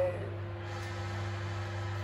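Microwave oven running, a steady low electrical buzz.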